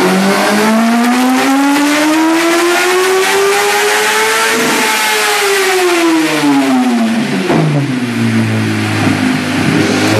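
2008 Yamaha R1 inline-four with a Graves full race exhaust, revving on a rolling-road dyno in a power run: the engine note climbs steadily through the revs to a peak about halfway, then falls away as the rollers run down. It holds low and steady for a couple of seconds, then starts to climb again at the very end.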